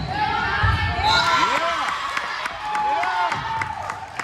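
Indoor volleyball rally in a gym: sharp hits of the ball and shoes squeaking on the court, with players' and spectators' voices and some cheering as the point ends.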